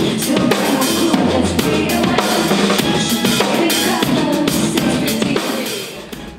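DW drum kit with Zildjian cymbals played fast and busy: a dense run of snare, tom and bass drum strokes mixed with cymbals, falling away near the end.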